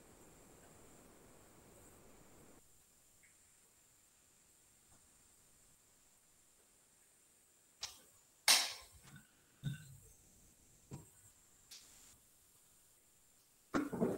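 Faint hiss, then near silence, broken in the second half by a handful of short knocks and bumps close to the microphone as a person comes back to the computer; one of them is a sharper, louder noise.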